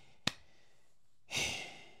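A short sharp click, then about a second later a man sighs: one breathy exhale lasting about half a second.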